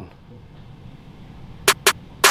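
Low, steady room hiss, then two short sharp clicks in quick succession near the end.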